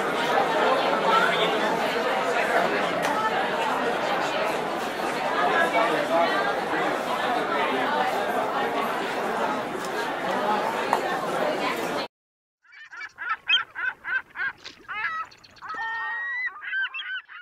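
Crowd chatter: many people talking at once, with no single voice standing out, which cuts off abruptly about twelve seconds in. After a short gap, a quick series of honks follows.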